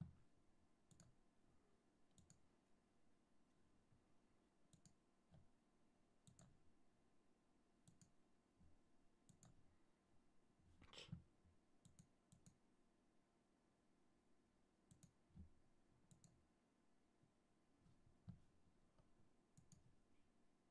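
Faint computer mouse clicks, scattered about one every second or so, over near silence, with one short louder sound about eleven seconds in.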